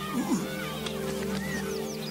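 Film score with steady held notes, over which a short wavering low vocal sound comes near the start and a run of short, high, falling chirps in the second half.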